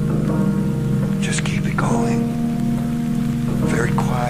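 Music: a slow, dark Fender Rhodes electric piano passage holding sustained low chords, with rain-like water sound effects layered over it in short hissing bursts, one a little after a second in and another near the end.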